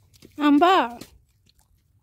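A child chewing and biting into a raw green fruit, with small clicking bites. A voice calls out once, loud and brief, about half a second in.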